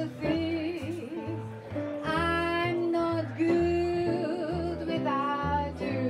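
Live jazz vocal trio: a woman sings a ballad line into a microphone, with held notes, over a hollow-body archtop guitar and a plucked upright bass.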